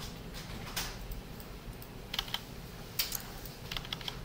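A handful of separate, irregularly spaced clicks from a computer keyboard and mouse.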